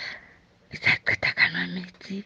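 A person's voice in short, breathy syllables, ending in a brief voiced sound near the end.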